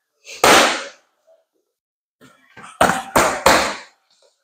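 Boxing gloves striking focus mitts: one punch about half a second in, then three quick punches near the end, each a sharp smack.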